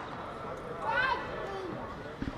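Voices in a reverberant indoor sports hall, with one raised call about a second in over the hall's background hubbub.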